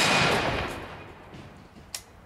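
Rolling echo of a heavy rifle shot fired just before, fading away over about a second and a half. A brief sharp click comes near the end.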